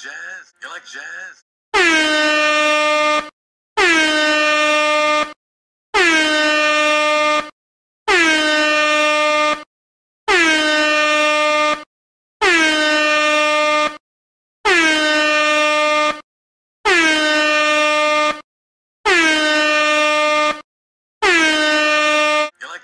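An air horn sound effect blasting ten times, roughly every two seconds. Each blast is about a second and a half long and dips briefly in pitch at its start before holding steady.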